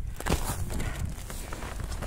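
Low rumble of wind on the microphone, with a few soft knocks in the first half-second.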